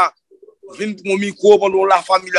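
A man's voice speaking, starting again after a short pause of about half a second.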